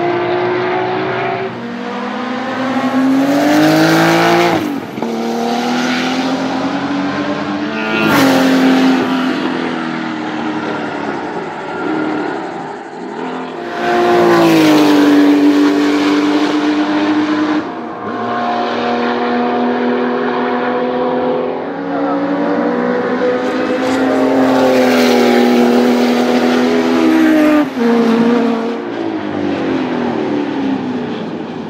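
Porsche 935 race cars' turbocharged flat-six engines at full throttle on track, the pitch climbing steadily through each gear and dropping sharply at every upshift, several times over as cars pass and pull away.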